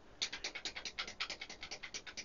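Rapid, even series of short clicks, about nine a second, from the front-panel keys of an Advantest R6142 programmable DC voltage/current generator as the output voltage is stepped up digit by digit.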